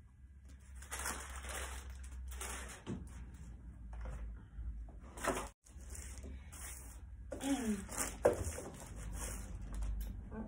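Crisp packets and a paper sheet rustling and crinkling as they are handled, with a household iron pressed and slid over the paper to tack the foil packets together.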